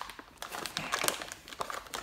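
Plastic anti-static bag around a graphics card crinkling as hands handle it and pull it open, a run of short, irregular crackles.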